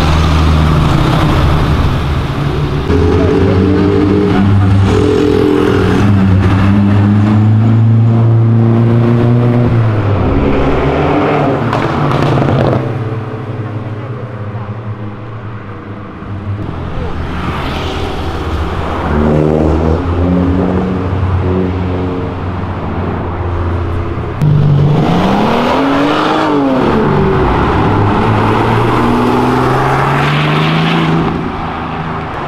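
Cars driving off one after another, their engines revving up and changing gear. A Chevrolet Opala SS runs steadily at the start. Near the end a loud engine jumps in, its pitch swooping up and back down, as a Porsche 911 pulls away.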